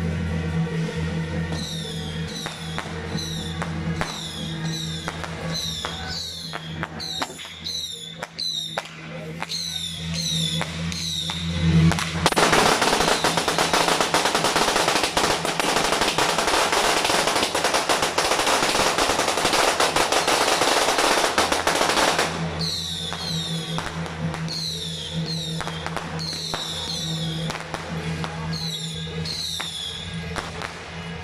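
Music with a steady low drone and repeated short, falling high notes. About twelve seconds in, a long string of firecrackers goes off: dense, rapid crackling that is louder than the music and lasts about ten seconds before the music comes back alone.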